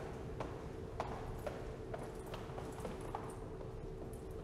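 Footsteps on hard stairs: light, sharp taps at an uneven pace of about two a second, over a steady low hum.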